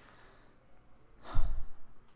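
A person's sigh, one short exhale close to the microphone a little past halfway, with a low rumble of breath hitting the mic.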